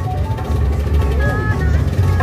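Loud music with heavy, pulsing bass played through a parade sound system, with a voice over it.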